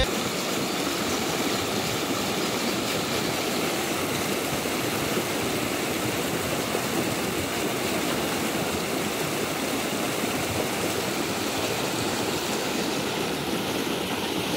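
Shallow rocky stream rushing over a small cascade: a steady, even rush of water.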